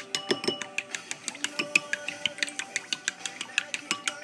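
Chopsticks whisking raw eggs in a ceramic bowl, clicking rapidly and irregularly against the bowl, over background guitar music with held notes.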